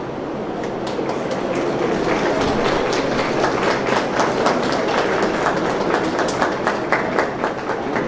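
Audience applauding: many hands clapping, thickening after about the first second.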